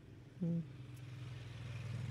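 Steady hum of a landscaping crew's small-engine power tool, slowly growing louder. A short "mm" comes about half a second in.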